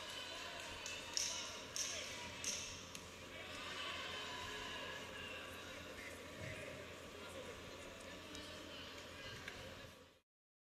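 Voices and hall noise in a large arena. About a second in come three sharp slaps, about two-thirds of a second apart.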